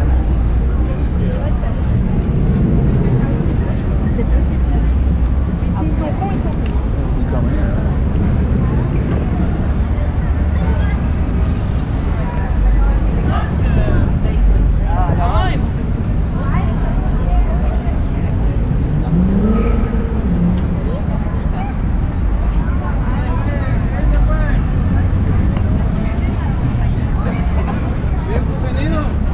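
Busy street ambience: steady traffic on the boulevard with a constant low rumble, and the scattered voices of people walking by.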